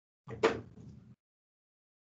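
A single short knock or thump about half a second in.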